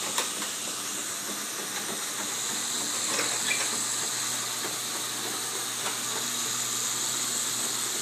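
Raynor Control Hoist Basic jackshaft garage door operator running, lifting a high-lift sectional door: a steady motor hum under the whir of the door rolling up its tracks. It stops right at the end as the door reaches full open.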